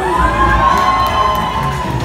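A crowd of wedding guests cheering as the couple's dance ends in a dip. One high voice is held for about two seconds over the crowd noise.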